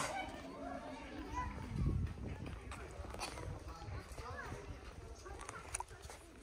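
Background voices of people talking along the lane, indistinct, with a low thump about two seconds in.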